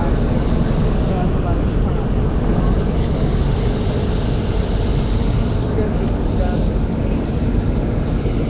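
Steady low rumble of street noise with faint voices in the background, from a packed crowd.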